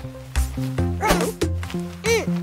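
Light cartoon background music with steady bass notes, and a short cartoon puppy vocalization about a second in.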